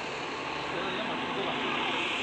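Steady outdoor background noise, an even hiss with faint voices mixed in.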